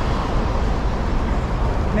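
Steady low rumble of road traffic, with no single event standing out.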